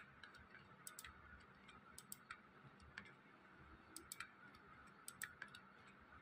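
Faint, irregular clicks of a computer mouse's buttons over a quiet room, often in quick pairs.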